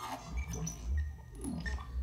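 Modular synthesizer patch making erratic R2-D2-like chirps and bleeps that jump from pitch to pitch over a steady low rumble. Its oscillators are pitched by a clock pulse and sample-and-hold voltages and run through a Mutable Instruments Clouds granular processor.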